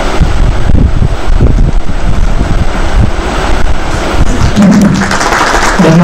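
Audience applauding a welcome, loud and continuous, with a heavy low rumble.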